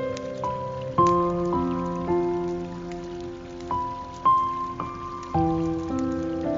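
Slow guitar melody: single plucked notes, a new one every second or so, each ringing on into the next. Underneath runs a soft, steady hiss of water.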